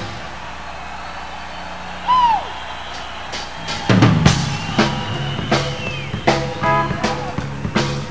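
Live rock band between songs: an electric guitar through a humming amplifier plays a single note that slides sharply down about two seconds in. From about four seconds in, loose drum-kit hits come in under a held high guitar note.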